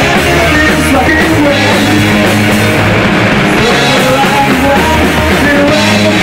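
A punk rock band playing live and loud: distorted electric guitars and a drum kit, with a man singing into the microphone.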